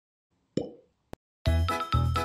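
A single cartoon-style plop sound effect, then a short click. Upbeat background music with a steady bass beat starts in the last half-second.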